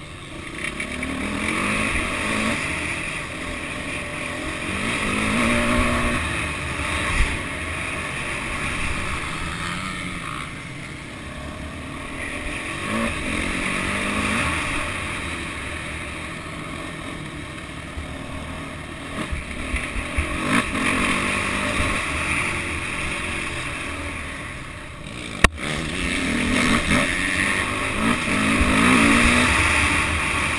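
Motocross bike engine ridden hard, the revs climbing and easing off again every few seconds, heard from an onboard camera with wind rushing over the microphone. Two sharp knocks, the louder one near the end.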